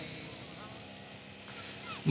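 Faint low background noise with a few faint, distant voices.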